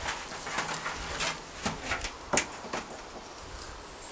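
A handful of light, separate knocks and scrapes as a sheet of corrugated galvanized tin is handled and moved.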